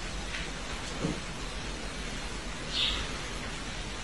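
Steady background hiss, with a soft thump about a second in and a brief high-pitched sound near three seconds.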